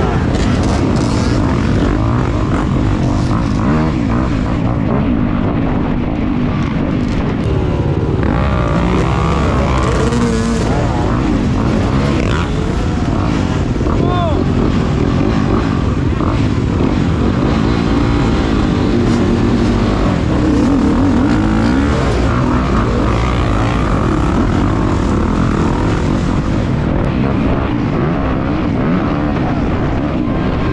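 Several off-road dirt bike engines running and revving together, pitch rising and falling continuously, as riders gun their bikes to get through a jam of downed bikes on a loose dirt climb.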